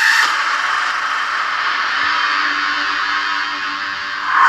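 Closing music of a TV promo trailer: a sustained, dense swell with a low held note coming in about halfway through.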